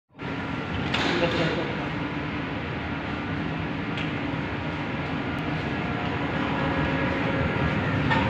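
Underground metro station and train ambience: a steady hum from the waiting train and ventilation, with indistinct passenger voices and a couple of light clicks as people board through the platform doors.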